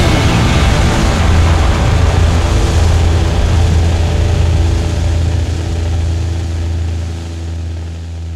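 Final chord of a garage-rock song held and left ringing: distorted electric guitars and bass in one loud sustained drone with a hiss of cymbals over it, fading slowly near the end.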